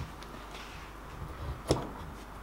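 A Veritas router plane being handled on a wooden board: soft knocks and one sharp click near the end, over faint room hum.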